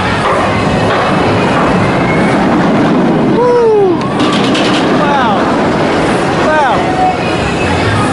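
Steel looping roller coaster running over a steady funfair din, with a short high rattle about four seconds in. Riders' shouts rise and fall three times, about three and a half, five and six and a half seconds in.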